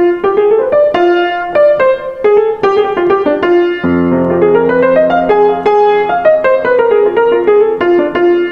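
Grand piano played solo: a quick single-note line in the F blues scale, played in varied rhythms. Left-hand chords come in about halfway through, and the phrase ends on a held note.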